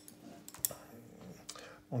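A few light clicks and taps from handling a paintbrush and painting gear, over a faint steady hum.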